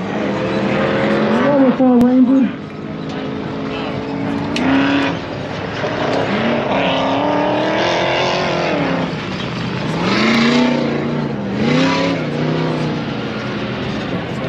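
Engines of 4400-class off-road race cars running on the dirt course. Their note rises and falls in long sweeps several times as they accelerate and lift.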